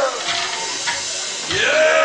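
Live hardcore band's amplified sound at the very end of a song: a falling note dies away just after the start, leaving hiss and room noise, and about one and a half seconds in a pitched tone rises and holds steady.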